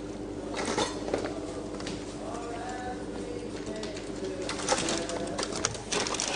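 Light clicks and rustling of a meal being eaten from takeaway containers and paper bags, over a steady hum, with a brief soft tone that rises and falls about halfway through. The clicks bunch up near the end.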